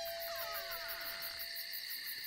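Crickets chirping steadily in the night air, under a falling gliding tone that fades away over the first second or so.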